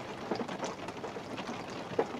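Rain pattering on the roof of a van, heard from inside the cab: a soft steady hiss with many small scattered ticks. There is one small click near the end.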